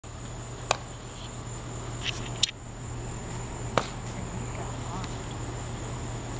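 Insects calling in a steady high-pitched trill, over a steady low hum, with a few sharp clicks.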